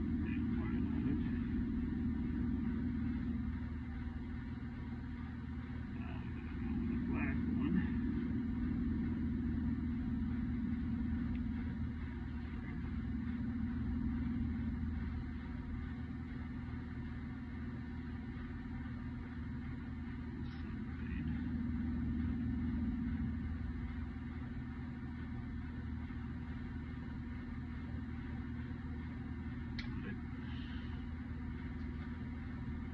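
Steady low drone of mechanical-room machinery that slowly swells and eases every few seconds, with a few faint clicks from wires and wire nuts being handled.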